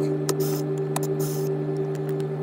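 Cordless drill with a T25 Torx bit running at a steady speed, backing out the screws of a cabinet latch, with a couple of sharp clicks over it.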